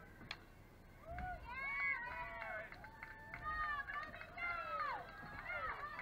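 A single sharp crack of a softball bat hitting the ball, then from about a second in many voices shouting and cheering at once.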